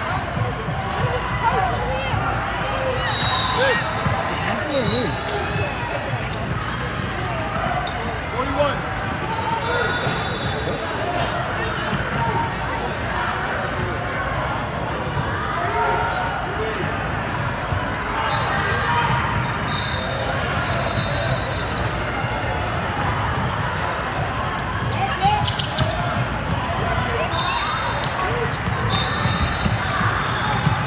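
Basketball game sounds on a hardwood court in a large gym: a ball bouncing with many short knocks, over a constant background of player and spectator voices, with a few brief high tones now and then.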